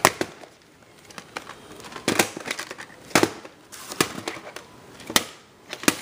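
Plastic VHS cassettes clacking and knocking as they are handled and set down: about half a dozen sharp knocks, irregularly spaced a second or so apart.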